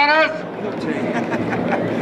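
Steady drone of distant piston-engined racing aircraft with open-air background noise. A man's voice ends a sentence at the very start.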